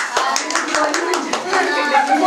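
A small group clapping their hands, uneven and quick, several claps a second, mixed with excited children's voices.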